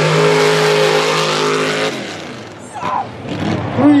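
Mud truck's engine held at steady high revs as the truck runs through the mud pit, cutting off suddenly about two seconds in. An announcer starts calling out the run time near the end.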